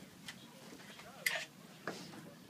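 A few faint clicks and a short hiss, handling noise from people moving about inside a van.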